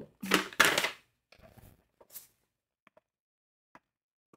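Paper pattern booklet rustling and crinkling as it is handled close to the microphone: two short loud rustles in the first second, then a few faint ticks of paper.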